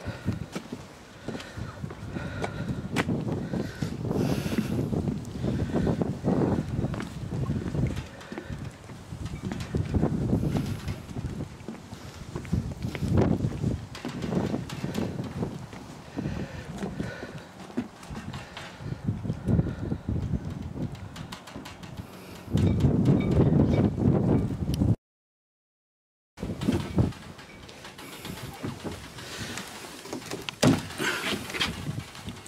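Wind buffeting the microphone in irregular gusts, with scattered knocks from handling and movement about the boat. The sound cuts out to silence for about a second and a half near the end.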